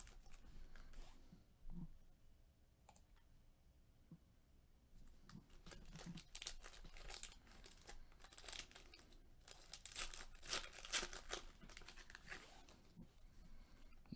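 Foil wrapper of a Legacy football card pack being torn open and crinkled by gloved hands, faint. A few light rustles at first, then steady crinkling and tearing from about five seconds in as the pack is opened.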